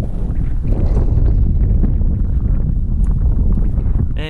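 Wind buffeting the camera's microphone: a loud, steady low rumble with no speech over it.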